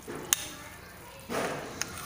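A spatula stirring a thick vegetable and coconut mixture in a pan: a sharp tap against the pan about a third of a second in, then a short scraping swish a little after a second, ending in a small click.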